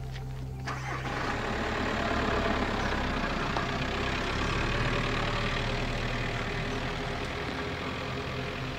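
Volkswagen Transporter van's engine running, its sound swelling about a second in and then holding steady as the van moves off.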